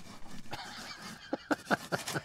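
A giant wooden pencil writing a signature on a paper shipping label stuck to a cardboard box: a faint scrape, then several short strokes near the end.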